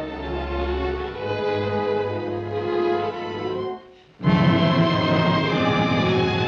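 Orchestral film score with strings playing sustained chords. The music drops out almost completely for a moment just before four seconds in, then comes back louder.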